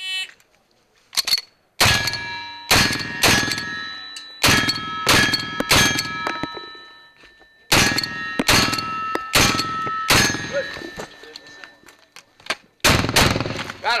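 Black-powder 1851 Navy revolvers fired in quick strings, about half a second between shots, each shot followed by the ringing ding of a hit steel target. There is a pause of a few seconds before the firing resumes near the end.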